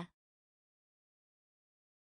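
Near silence: a dead-quiet pause between words of a synthesized voice, with no background sound at all.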